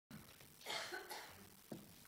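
A person's single short cough, about half a second long, followed by a faint knock just before the end.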